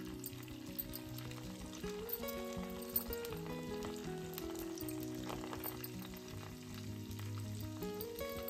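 Hot oil sizzling and crackling in a miniature kadai as batter-coated cauliflower florets are dropped in to deep-fry, with background music playing.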